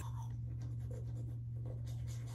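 Manual toothbrush scrubbing teeth, a soft rhythmic scratching of bristles, over a steady low hum.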